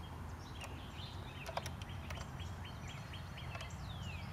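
A small bird chirping outdoors, a quick run of short repeated notes about four a second, then a falling whistle near the end, over a steady low rumble of open-air noise. A few light metallic clicks come from the tool on the carriage nuts as they are tightened.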